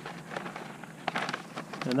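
Paper sample envelope and cut carrot leaves rustling and crackling as they are handled, in short irregular crackles that cluster about a second in.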